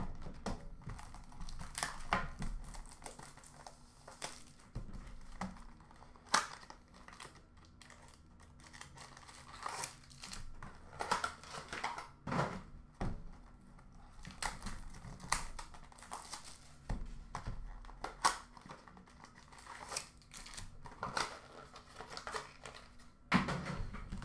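Trading-card box and packs being handled and unpacked: irregular crinkling and rustling of wrappers and cardboard, with scattered sharp taps and clicks as packs are set down.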